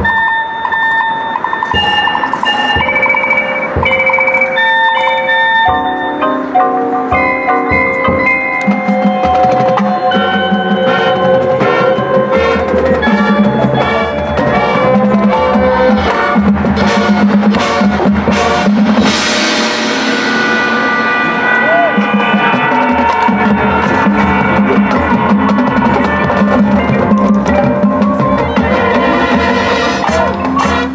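High school marching band and front ensemble playing a field show: held chords that change step by step over drum strikes, swelling into a loud crash about nineteen seconds in, after which the full band plays on with percussion.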